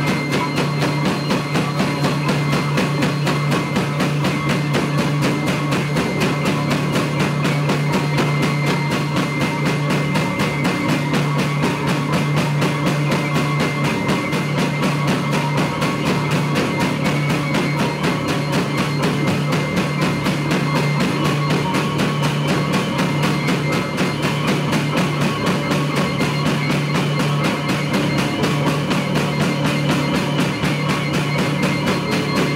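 Live band playing loud, unbroken music: a drum kit keeps up a dense, driving beat over a steady low drone, with a hurdy-gurdy among the instruments.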